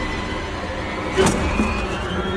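Film fight soundtrack: a steady low rumble of tense underscore and ambience, with one sharp impact hit a little past halfway as the two men grapple.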